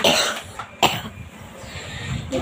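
A boy coughing twice: a sharp cough right at the start and a second one just under a second later.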